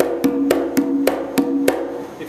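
Conga drum struck with the bare hand, about seven quick strokes in an even rhythm, each ringing briefly. The strokes sound at two pitches, one lower and one higher, which mostly alternate.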